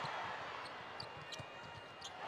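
Basketball dribbled hard on a hardwood court, a run of short thumps, over arena crowd noise that fades lower through the stretch, with a few brief high squeaks about a second in.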